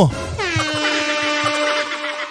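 A horn-like sound effect: one long, buzzy tone that slides down in pitch as it starts, then holds steady.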